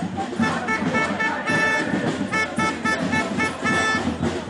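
A horn toots a run of short, staccato notes, some repeated on the same pitch, over the steady din of a marching crowd.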